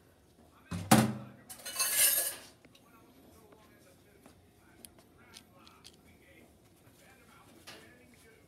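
Metal kitchen utensils clattering while a smaller cookie scoop is fetched: a loud knock about a second in, a longer rattling clatter around two seconds, then only faint light clicks of handling.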